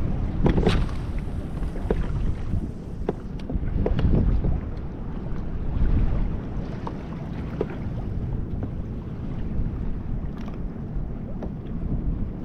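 Wind buffeting the microphone and choppy sea water lapping at a kayak's hull, with a few brief knocks.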